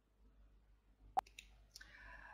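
Near silence, broken by one sharp click a little past the middle, then a faint, breath-like rustle near the end.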